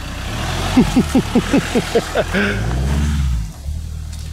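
A man laughs in a quick run of 'ha-ha-ha' over the low running of a Ford Transit Custom van's engine as the van is turned round. The engine note swells about two and a half seconds in, then drops away near the end.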